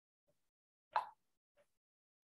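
Near silence broken by one short pop about a second in, with a few much fainter ticks around it.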